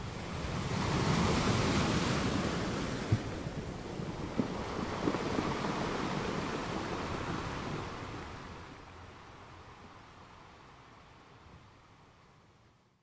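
Sea waves and wind, a rushing noise that swells up over the first couple of seconds and then slowly fades away over the second half. A few brief knocks come through in the middle.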